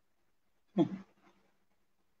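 A single short vocal sound, about three-quarters of a second in, its pitch rising at the start; otherwise quiet with a faint steady hum.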